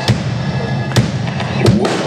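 Live rock band playing, with sharp drum-kit strikes standing out over the electric guitar: one at the start, one about a second in, and two close together near the end.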